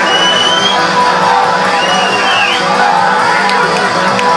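Live ringside music of the kind that accompanies a Lethwei bout: a high melody line that glides in pitch over steady held tones, with crowd noise underneath.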